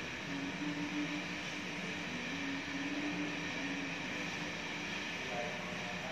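Steady background noise in a room: an even hiss with a faint low hum, no distinct event.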